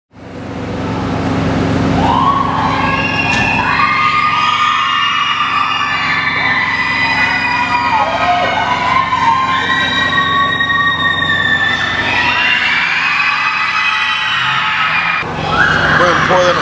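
An emergency-vehicle siren wailing, its pitch repeatedly rising, holding and dipping, over a steady low hum.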